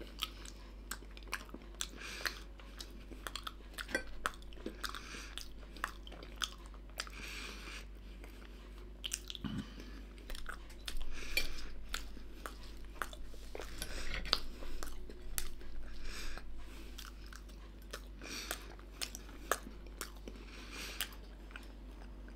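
A man chewing oven-baked Findus Pommes Noisettes potato balls close to the microphone, with many small irregular clicks of the mouth as he eats.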